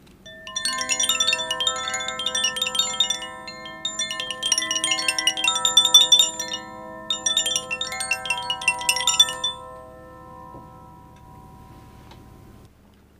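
Altar bells rung in three bursts of rapid ringing at the elevation of the chalice after the consecration, their lingering tones fading out near the end.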